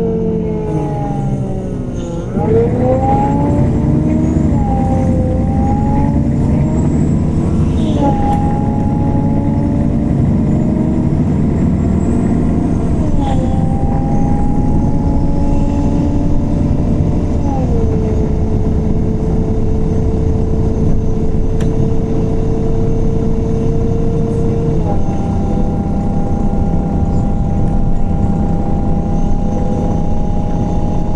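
The cabin of a 2014 MAN Lion's City CNG city bus: its gas engine and ZF Ecolife six-speed automatic gearbox slow down, then accelerate. The whine climbs and drops back at each of about four upshifts, then holds steady at cruising speed.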